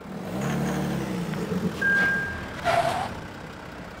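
Audi A6 engine briefly running, then dying in a stall because the clutch was not pressed. A single steady dashboard warning beep follows, then a short burst of noise.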